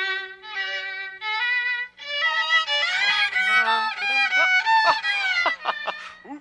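Solo violin playing: three long bowed notes, each higher than the last, then a quicker passage with sliding pitches, ending on a held high note.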